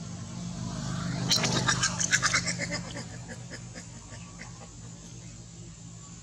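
A macaque's rapid burst of high-pitched squealing chatter, starting about a second in and lasting about a second and a half, in protest during a rough scuffle with another monkey. A steady low hum runs underneath.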